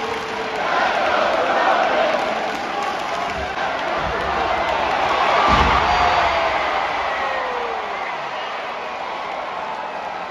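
Arena crowd cheering and shouting around a wrestling ring, with a heavy thud of a body hitting the ring mat about five and a half seconds in. A long falling shout from the crowd follows.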